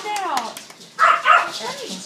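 Young girls' excited squealing and exclaiming without clear words: a high cry that slides steeply down in pitch, then another loud high outburst about a second in.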